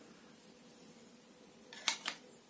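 Mora Classic 1 knife pushed into its plastic sheath: after a quiet stretch, a sharp click near the end as the blade seats.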